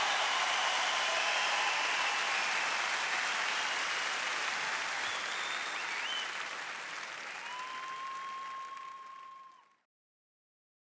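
Large arena crowd applauding and cheering, with a few whistles, slowly dying down; the sound cuts off abruptly shortly before the end.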